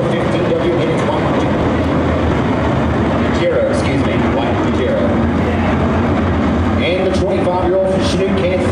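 A pack of USRA Modified dirt-track race cars' V8 engines running hard at racing speed, a loud steady rumble with engine pitches rising and falling as cars pass.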